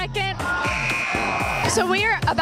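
Background song with vocals; about two-thirds of a second in, a gym scoreboard buzzer sounds one steady high tone for about a second, marking the end of a tied overtime period.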